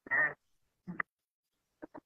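A person's voice making a few short wordless sounds, the first the loudest and the rest brief.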